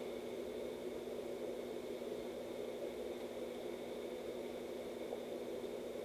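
Faint steady room tone: a low hum with a few constant tones and an even hiss, unchanging throughout.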